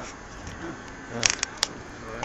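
Mostly speech: a man says "yeah" about a second in, with a few sharp clicks just after, over faint background noise.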